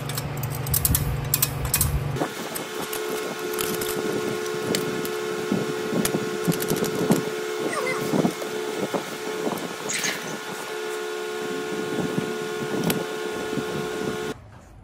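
Light metal clinks and taps from a stainless exhaust pipe and its V-band clamp being handled and fitted to the exhaust headers. A steady hum sets in about two seconds in.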